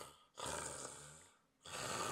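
A man's exaggerated comic snoring, performed for a puppet character asleep in a chair: about three rasping snores in a row, each roughly a second long with short pauses between.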